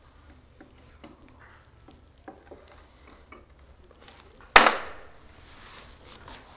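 Small clicks and taps of a meal being eaten by hand from a plate, then one sudden loud crack about four and a half seconds in that trails off over a second.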